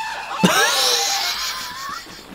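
Rubber chicken squeezed, letting out a long, harsh squawk that starts suddenly about half a second in and trails off over more than a second, with laughter mixed in.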